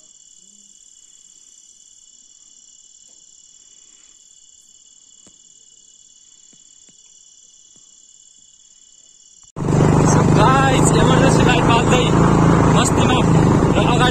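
Crickets chirping in a steady high trill. About nine and a half seconds in there is a sudden cut to a loud, steady vehicle engine hum with voices over it.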